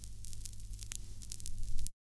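Surface noise of a 1962 vinyl 45 rpm single playing on after the song has ended: a hiss with scattered sharp crackles and clicks over a steady low hum. The loudest click comes near the end, and then the sound cuts off suddenly.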